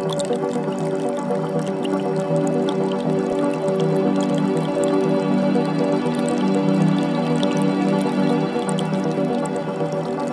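Calm ambient music of slow, held tones, mixed with the gentle trickling and dripping of a forest creek.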